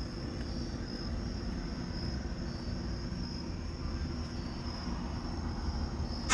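Faint, steady background noise with no speech: a low rumble under a thin, high-pitched whine that swells slightly at times.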